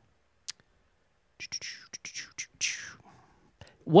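A person whispering under their breath, breathy and hissy. There is a single faint click about half a second in.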